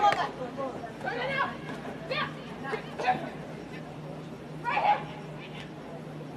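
Short, indistinct shouts from people on a rugby field during open play, four brief calls spaced about a second apart, over a faint steady low hum.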